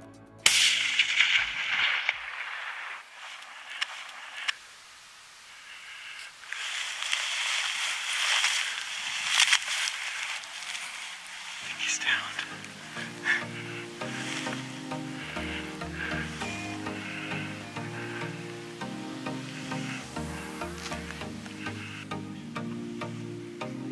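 A single loud gunshot about half a second in, its report echoing and fading over a second or two: the shot that brings down a wolf on the hillside. Wind and rustling noise follow, and background music takes over about twelve seconds in.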